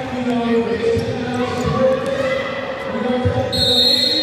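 Voices in a large echoing hall, some held on one pitch like chanting or singing, over irregular dull thumps.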